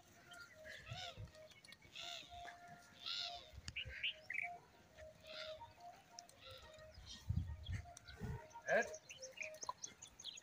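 Birds chirping and calling repeatedly in short arched calls, with a few low thumps late on.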